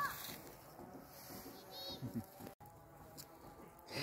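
Faint outdoor background with faint rustling and two brief, high, rising chirps: one at the very start and one about two seconds in.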